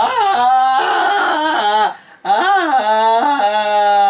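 A man singing two long, loud wordless notes, each sliding and wavering in pitch, with a short break about two seconds in.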